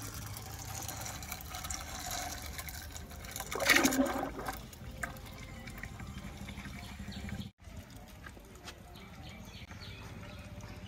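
Used engine or gear oil draining from an excavator's drain point in a steady stream, pouring and trickling into oil already in a plastic bucket. A brief louder sound stands out about four seconds in.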